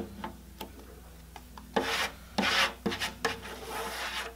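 A plastic spreader card scraping grain-filler paste across the wooden body of an acoustic guitar, filling the pores. After a quiet start with a few faint clicks, a run of quick scraping strokes begins about two seconds in.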